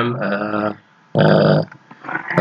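A man's voice making two drawn-out speech sounds, the first about three quarters of a second long and the second shorter, a little past the middle.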